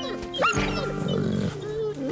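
Gray wolves vocalising in a close encounter: a sharp rising whine or yelp about half a second in, then about a second of rough growling snarl, with other brief whines around it.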